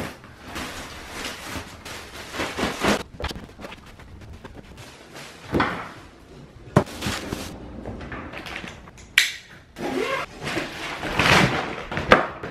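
Handling noises from packing: rustling of a nylon duffel bag and luggage, broken by a few sharp knocks and thumps.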